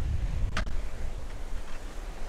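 Wind rumbling on the microphone over waves washing on a cobble beach, with one sharp knock about half a second in as a stone is dropped into a plastic bucket of rocks.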